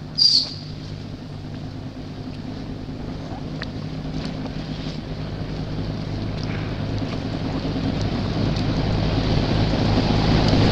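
Steady low hum of a motor vehicle engine running, growing gradually louder, with a short high squeal about a quarter second in.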